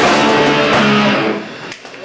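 Live hardcore punk band's electric guitars and bass ringing on held chords, dying away about a second and a half in as the song ends.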